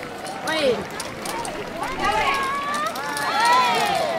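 Several voices calling out in high, rising and falling tones, with no music, and a few light clicks near the start.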